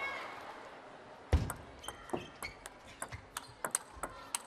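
Table tennis ball bouncing: a sharp knock about a second in, the loudest, then a dozen lighter, irregularly spaced ticks of the plastic ball.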